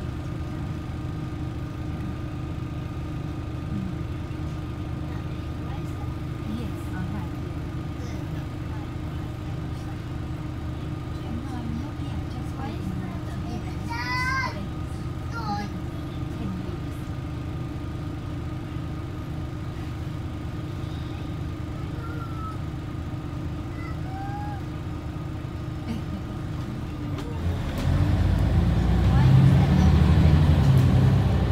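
Cabin noise inside a Scania OmniCity single-decker bus on the move: a steady drone of engine and road with a constant hum. Near the end the low rumble gets clearly louder.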